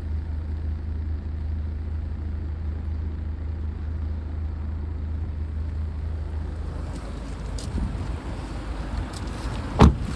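A steady low hum inside a car cabin, giving way after about seven seconds to rustling as someone climbs out, then a car's rear door shut with one loud thump near the end.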